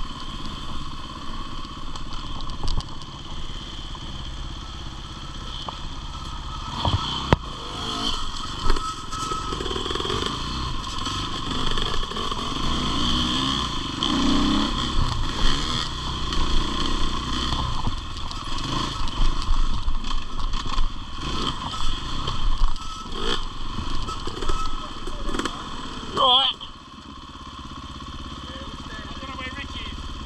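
KTM 525 EXC single-cylinder four-stroke enduro motorcycle ridden slowly along a dirt trail, its engine running steadily under frequent clattering knocks from the bike over the rough ground. About four seconds before the end the sound drops sharply as the bike pulls up and the engine settles to an idle.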